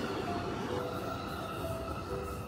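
Rumble of an electric commuter train passing on elevated tracks, under background music of slow sustained notes.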